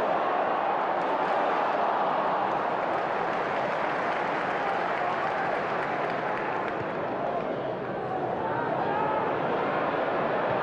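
Football stadium crowd noise: a steady din of many voices from the terraces, dipping slightly a little before the end.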